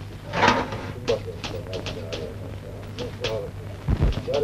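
Papers being handled: a short rustle about half a second in, then several brief light rustles and clicks, with faint murmuring and a steady low hum underneath.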